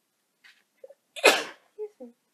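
A woman sneezing once, a loud, sudden sneeze about a second in, after a faint breath in. It is an allergy sneeze.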